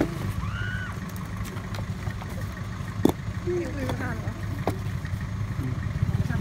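A small truck's engine idling steadily, with one sharp knock about three seconds in.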